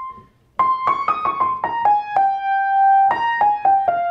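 Piano played with the right hand alone in the upper register: after a short pause, a quick line of single notes stepping downward, a held note, then more falling notes, using altered tones over a dominant chord.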